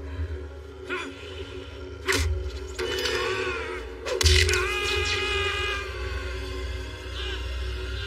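Dramatic film music over a battle soundtrack with a continuous deep rumble. Crashing, cracking impacts of debris come about one, two and four seconds in, the last the loudest.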